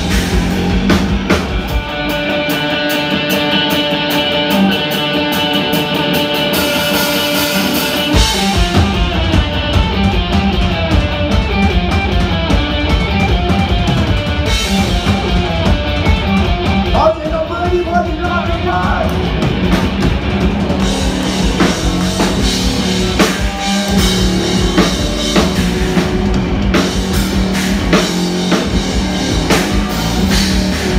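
Live rock band playing an instrumental passage on electric bass, drum kit and guitar, loud and steady. The low end comes in heavier about eight seconds in.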